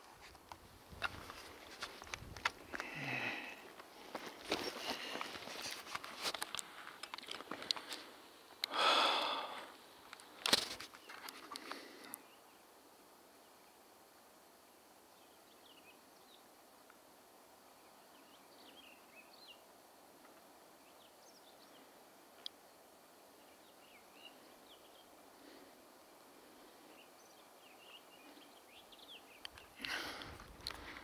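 Footsteps on rocky ground and heavy breathing from a hiker winded by a steep climb, with a loud breath about nine seconds in. After about twelve seconds, near silence with faint, scattered bird chirps.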